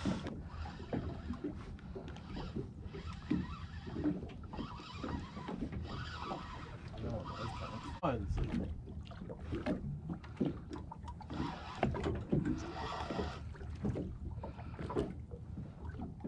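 Low, indistinct talk from men on a small boat, over a steady background of wind and water noise.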